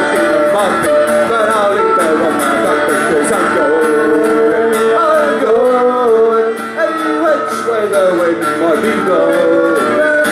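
Live acoustic band playing: strummed acoustic guitar, mandolin and fiddle, with a man singing.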